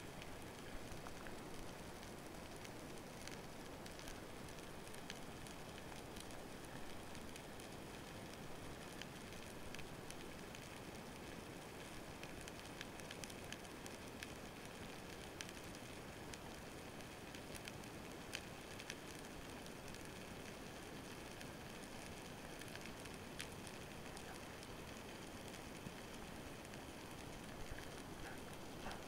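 Underwater ambient sound picked up by a camera in a waterproof housing: a steady hiss with scattered, irregular sharp clicks.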